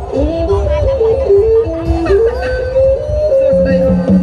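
Live dù kê (Khmer Bassac theatre) music: a melodic sung line of held notes that step and slide in pitch, over a low accompaniment.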